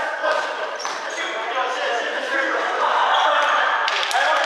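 A basketball bouncing on a wooden gym floor, with players' voices calling out through the hall.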